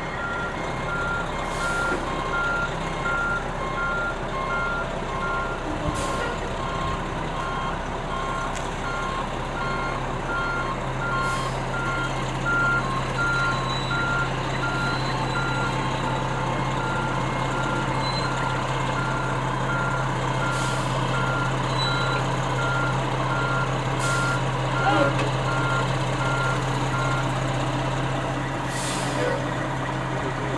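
Aerial ladder fire truck backing up: its reverse alarm beeps steadily, about two beeps a second, over the running diesel engine. The engine gets louder about ten seconds in, and the beeping stops shortly before the end.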